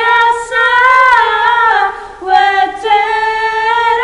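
Two girls singing together without accompaniment, holding long notes that bend gently in pitch, with a short break about two seconds in.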